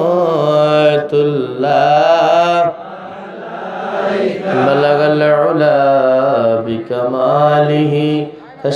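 A man's solo voice chanting a devotional salam to the Prophet in long, held, wavering notes. It breaks off briefly about three seconds in, then comes back softly and swells again.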